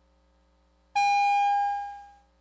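A single ring of the chamber's division bell: a clear, bell-like tone that starts suddenly about a second in, holds briefly, then fades away.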